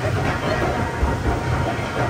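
Water-ride conveyor lift running as it hauls a round river-rapids raft uphill, giving a steady low mechanical rumble.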